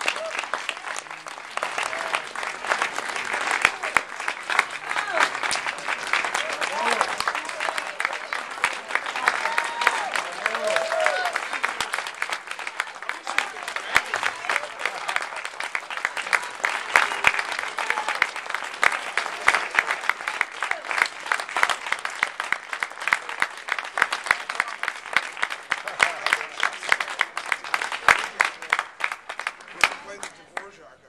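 Audience applauding steadily, with voices calling out and cheering among the clapping; the applause dies away at the end.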